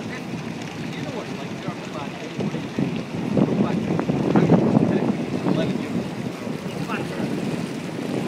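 Wind buffeting the microphone on a moving ship's deck, with indistinct voices in the background. The wind noise is loudest in the middle.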